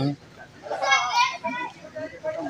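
Background voices: high-pitched, child-like talk about a second in, followed by quieter speech.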